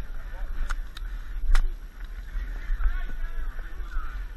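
People moving through a deep mud pit: a steady low rumble of the body-worn camera being jostled, distant voices of other racers, and a few sharp knocks, the loudest about one and a half seconds in.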